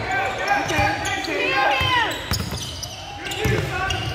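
Basketball dribbled and bouncing on a hardwood gym court during play, with players' shouts and voices echoing in the large gym.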